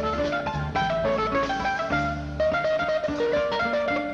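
Acoustic guitars of a bolero trio playing an instrumental interlude between verses. A lead guitar picks a quick melodic run over chords and low bass notes.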